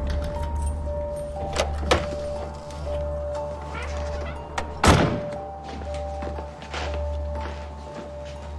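An interior door being handled, with a sharp knock about two seconds in and a louder thunk about five seconds in, over steady background music with sustained tones and a low drone.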